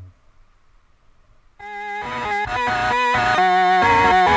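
Quiet at first, then about a second and a half in a rock track starts on guitar, with repeated picked notes building in loudness.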